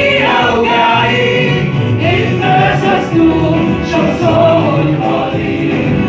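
Congregational worship singing: a woman leads a hymn into a microphone while the congregation sings along in unison.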